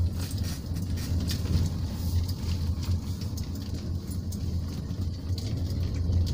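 Car driving, heard from inside the cabin: a steady low engine and road rumble, with a few faint clicks scattered through it.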